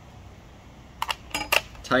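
A few light metallic clicks about a second in, from a combination wrench (scrench) being handled on the bar nut and chain-tension screw of an Echo DCS-2500T battery chainsaw during chain tensioning.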